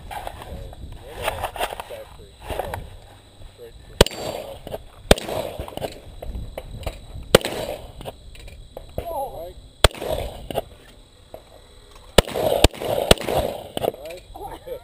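Gunshots on a shooting range: about half a dozen sharp reports at uneven intervals, one to two and a half seconds apart, over the murmur of voices.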